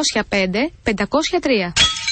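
A voice reading out a phone number, then near the end a single sharp clang with a short ringing tail.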